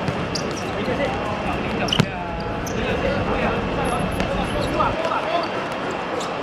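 A football being kicked and bouncing on a hard outdoor court, the loudest a single sharp thud about two seconds in, with players' shouts over a steady background din.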